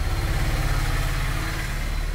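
A loud, steady low hum with a fast flutter in it.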